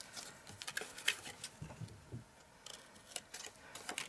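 Scissors snipping cardstock: a scattering of short, sharp snips and clicks.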